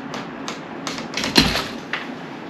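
Rope rigging on a Smooth Operator retrievable canyoneering anchor on CanyonPro rope creaking and clicking under a hard hand pull on the pull strand while a person hangs on it. The clicks come about every half second, with a loud, deep pop about one and a half seconds in as the pull tension suddenly lets go, at a little over 80 lb of force.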